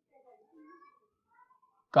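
A pause in the narration, near silence with a few faint, short wavering sounds; the narrator's voice comes back near the end.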